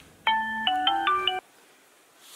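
Mobile phone ringtone playing a quick melody of several separate notes, cut off abruptly about one and a half seconds in as the call is answered.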